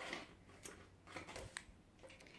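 Steel dressmaking shears snipping a strip of knit fabric in a few faint, short cuts, with one sharper click about one and a half seconds in. This is an older pair that chews up the knit rather than cutting it cleanly.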